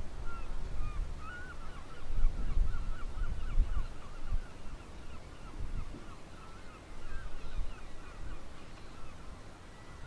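A flock of birds calling in a continuous chatter of short, overlapping calls, over a low, gusty wind rumble on the microphone that is strongest about two to four seconds in.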